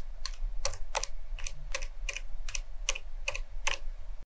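Typing on an FL Esports CMK75 mechanical keyboard fitted with fully lubed silent Lime switches. The keys are pressed one at a time at an even pace of about three a second, each giving a short, damped click.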